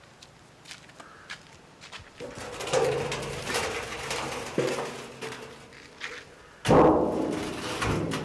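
Steel oil drum rolled along the ground, rumbling with a metallic ring, then set down upright with a sudden loud clang about seven seconds in that rings on as it fades.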